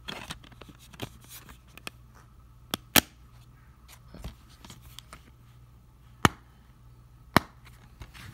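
Plastic DVD case and disc being handled, giving light rustles and sharp plastic clicks. The loudest click comes about three seconds in, and two more come in the last two seconds.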